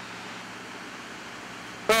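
Steady cabin drone of the Douglas DC-7's four Wright R-3350 radial piston engines and propellers, heard inside the cockpit in flight, with a low steady hum under it. A voice cuts in at the very end.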